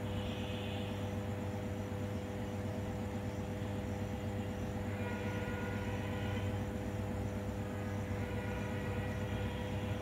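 Steady low electrical hum of high-voltage substation equipment, an unchanging drone with a stack of overtones.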